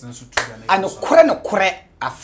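A man speaking, with one sharp hand clap about a third of a second in, just before his words.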